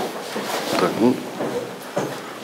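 Brief indistinct speech with a few sharp knocks and some rustling.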